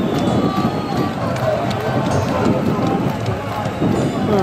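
Stadium crowd noise: many spectators' voices calling and chanting at once, a dense, steady din.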